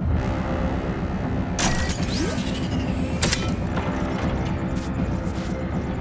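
Film sound effect of a futuristic dropship in flight: a loud, rapidly pulsing low engine rumble, with two sharp bright hits about a second and a half apart.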